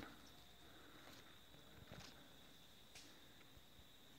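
Near silence: faint outdoor background with a thin steady high tone and a couple of faint brief ticks about two and three seconds in.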